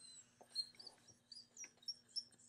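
Near silence: room tone with a faint steady hum, a few faint short high chirps and some soft clicks.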